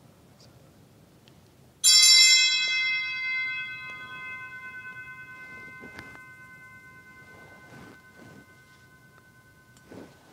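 An altar bell struck once, about two seconds in. It rings with several clear tones and fades slowly over the following seconds.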